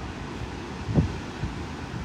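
Wind buffeting the microphone: an irregular low rumble over steady outdoor noise, with one stronger gust about a second in.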